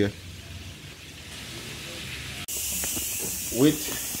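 Quiet background for about two and a half seconds, then a loud, steady hiss of steam starts abruptly: a stovetop pressure cooker venting as it cooks.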